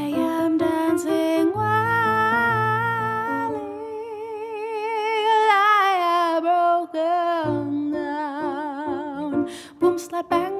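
A woman sings one long held note with wide vibrato over chords on a digital keyboard. The note slides down in pitch about halfway through, holds at the lower pitch, and a new phrase starts near the end.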